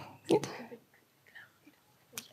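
Speech only: one short spoken word through a microphone, followed by faint whispering and then a near-quiet pause.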